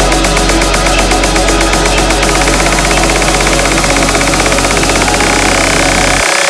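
Electronic dance music in a continuous DJ mix: a steady deep bass under a dense synth texture, with a fast ticking high pattern that drops out about two seconds in.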